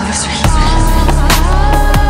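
Dark electronic dance music in the exotic trap and dubstep style. A filtered build-up gives way about half a second in to a heavy bass drop with sharp drum hits and sustained synth lines that glide in pitch.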